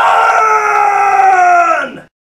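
Final held note of a punk rock song: a loud sustained sound with several tones together, slowly sinking in pitch and cutting off just before the end.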